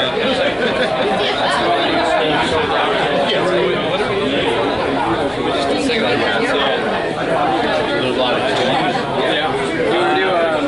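Indistinct chatter of several voices talking over one another; no music is playing.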